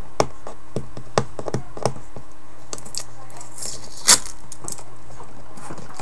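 Hands opening a cardboard phone box and its wrapping: scattered small clicks and scrapes, with a hiss rising into one sharp, louder crack about four seconds in.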